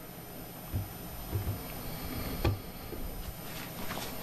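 Faint handling noise as a smartphone is lifted off a knife sharpener's guide rod: a few soft low bumps and one short click about two and a half seconds in, over quiet room tone.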